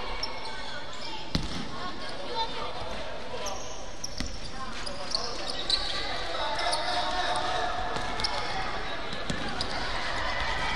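A basketball bouncing on a hardwood gym floor, a few scattered thumps, over background voices in a large gym.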